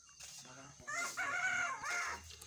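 A rooster crowing once, a single call of about a second starting just under a second in.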